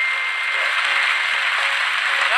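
Studio audience applauding, an even wash of clapping, with a high ringing ding tone fading out about halfway through.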